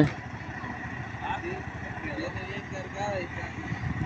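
A vehicle engine idling with a steady low rumble, with faint distant voices of people talking.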